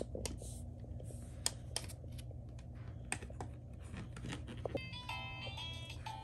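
Light plastic clicks and taps as a Sesame Street Elmo toy music player and its discs are handled, then near the end the toy starts playing an electronic tune.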